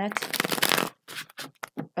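A deck of tarot cards being shuffled by hand: a dense rustling rush of cards for about a second, then a quick run of separate card snaps.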